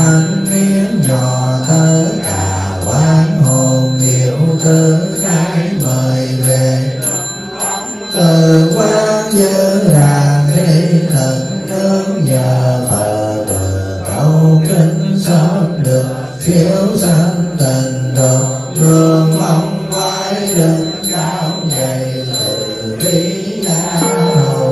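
Buddhist sutra chanting by a group of monks in unison, a melodic recitation kept to a steady beat of strokes about twice a second. The chant breaks off right at the end as a bell rings on.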